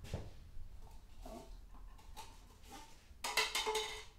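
A few faint knocks, then a short rattling clatter of hard objects knocked together, the loudest part, about three seconds in.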